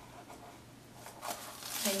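Paper release backing being peeled off Heat n Bond Lite iron-on adhesive bonded to interfacing: faint dry ripping and crackling that builds over the second half.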